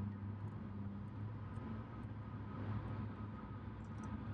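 Steady road and engine noise heard inside a car's cabin while driving on the highway: a low, even hum under tyre rumble.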